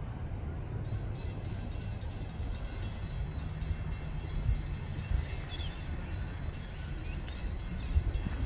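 NSW steam locomotive 3801, a C38 class 4-6-2 Pacific, running toward the listener at speed while still some way off: a steady low rumble of its exhaust and running gear.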